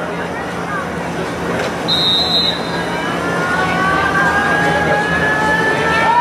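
Spectators and players at a football kickoff making steady crowd noise, with a short high whistle blast about two seconds in. Then a held, slowly rising yell builds from several voices toward the kick.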